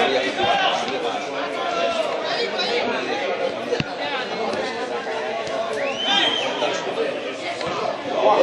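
Spectators talking among themselves close to the camera: several overlapping voices in steady chatter, with no single speaker standing out. A short high rising-and-falling call cuts through about six seconds in.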